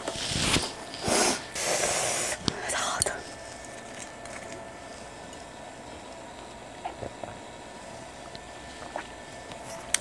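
A person's breathy puffs of air through the mouth: four short puffs in the first three seconds, then quiet room tone with a couple of faint clicks.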